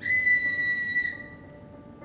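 A single high, steady whistle-like note that starts suddenly, holds for about a second and then fades, over faint background music.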